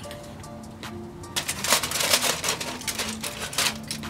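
Aluminium foil crinkling as it is peeled off a pot on a grill: a dense crackle from about a second and a half in until near the end, over background music.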